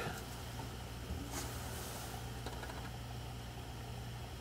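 Quiet room tone with a steady low electrical hum, and a faint brief rustle of handling about one and a half seconds in.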